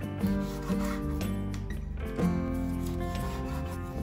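Chef's knife cutting a lemon into chunks on a wooden cutting board: several short cuts through the fruit onto the board. Background music plays throughout.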